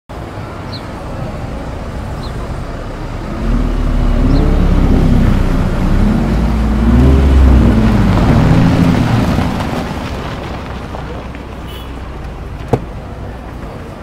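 Chevrolet Corvette C8's V8 engine running as the car drives in, its pitch rising and falling with the throttle, loudest in the middle and easing off as it slows. A single sharp click comes near the end.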